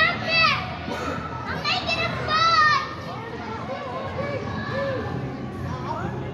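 Children playing and shouting in a busy indoor play hall, with several high-pitched squeals in the first three seconds, then a steady din of children's voices.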